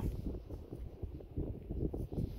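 Wind buffeting a phone's microphone on an exposed seashore: an uneven, gusty low rumble.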